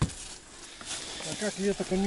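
A single sharp click at the start, then faint outdoor background, then a person talking briefly in the last part.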